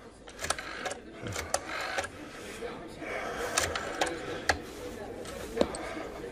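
A desk telephone being dialled: a run of irregular sharp clicks with mechanical whirring between them, as the dial is turned and spins back.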